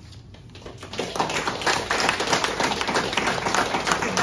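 A small audience clapping at the end of a performance, starting faintly and swelling about a second in to steady applause.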